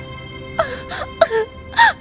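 A woman sobbing: several short crying sobs that bend in pitch, the loudest near the end, over soft background music of steady held notes.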